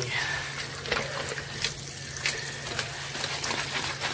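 Kitchen tap running steadily, water splashing over raw shrimp in a plastic colander and into a stainless steel sink as they are rinsed by hand, with a few brief clicks.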